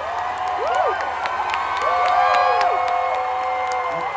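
Concert crowd cheering between songs, with many overlapping whoops and held shouts that rise and fall, and scattered clapping.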